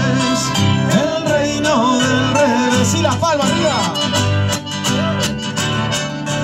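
A live chamamé band playing: an accordion carries a bending melody over strummed guitars and a bass line in a steady dance rhythm.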